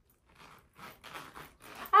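Faint rustling and scratching as a small zippered wallet and its styrofoam packing are handled, in a few short rustles.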